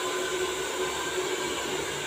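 Hand-held hair dryer blowing steadily on short hair: an even rush of air with a constant motor hum.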